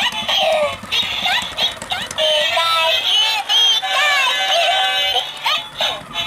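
Walking, singing Pikachu plush toy playing its electronic Pikachu voice and song through its built-in speaker, the voice sliding up and down in pitch. Clicks from its walking mechanism are heard along with it.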